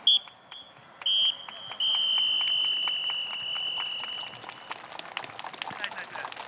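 A referee-style whistle blown at football training: a short toot, a second short toot about a second in, then a long blast of about three seconds that fades toward its end.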